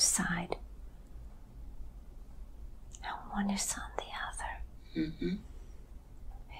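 A woman speaking in a soft whisper: a short phrase at the start, another from about three seconds in, and a brief murmur near five seconds, with quiet pauses between.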